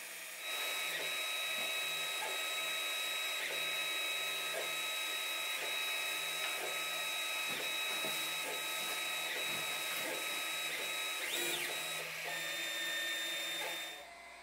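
Monoprice Maker Select Mini 3D printer printing: its stepper motors give a steady whine of several high tones, with small blips as the print head changes direction.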